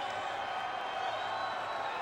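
Large arena crowd cheering steadily, with whistles rising and falling through the din.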